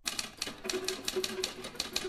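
Typewriter keys clattering in a rapid, uneven run of about ten strokes a second, over a faint held low note.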